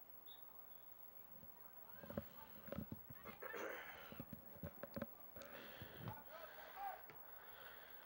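Faint open-field ambience of a soccer game: distant shouts and calls from players, with a few soft thuds from about two seconds in.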